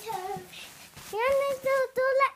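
A young child's high voice, softer at first, then singing three short held notes in the second half.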